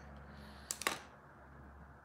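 Quiet room tone broken by a short cluster of light clicks a little under a second in.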